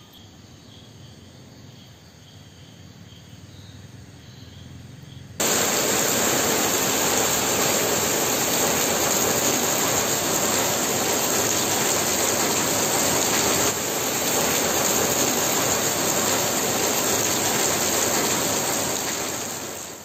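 Faint crickets chirping at night. About five seconds in, they give way abruptly to the loud, steady hiss of heavy rain, which fades out near the end.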